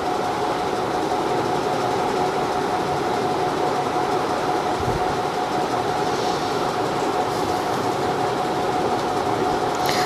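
A steady mechanical hum: even noise with a constant tone held under it, unchanging throughout.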